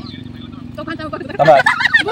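A group of women breaking into loud laughter about a second and a half in, after a quieter stretch of low talk.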